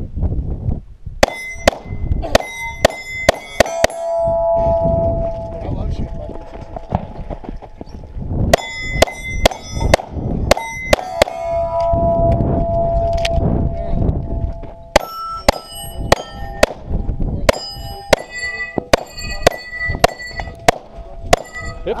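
Pistol shots in three quick strings, each hit answered by the ringing clang of steel plate targets, with the plates still ringing in the pauses between strings.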